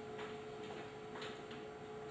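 Room tone in a pause of a speech: a faint steady hum with a couple of soft clicks.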